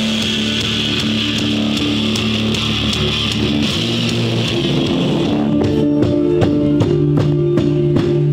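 Rock music led by electric guitar. About five seconds in it changes to a cleaner section of held notes over a steady beat.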